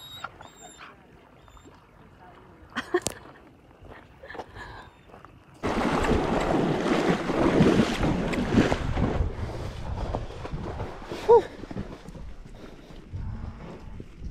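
A horse wading and swimming through a muddy stock pond, water splashing and churning around it close to the saddle. The splashing starts suddenly about halfway through and dies down as the horse reaches the bank.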